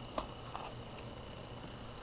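Faint steady hum of a small homemade pulse motor running on its supercapacitor alone, with a thin high whine and a few light clicks as the battery is taken out.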